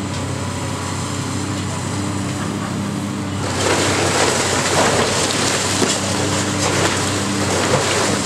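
A high-reach demolition excavator's engine and hydraulics run with a steady hum. About three and a half seconds in, a louder crackling rush of breaking masonry and falling debris comes in as the building's wall is pulled down.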